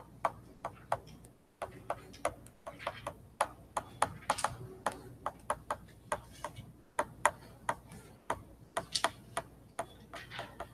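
Stylus tapping and scraping on a writing surface as words are handwritten: an irregular run of faint, sharp clicks, several a second.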